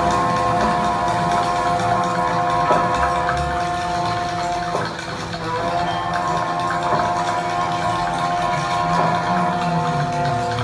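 Live Nordic folk music: several long held notes sound together over a low drone. They break off about five seconds in and come back in with a slight upward scoop. Faint strikes fall every two seconds or so.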